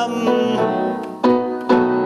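Grand piano playing sustained chords, with a few chords struck afresh about a quarter second, a second and a quarter, and just under two seconds in, in a gap between sung lines of the song's accompaniment.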